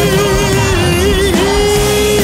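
Gospel song: a male singer holds one long sung note with a slight vibrato over full band accompaniment.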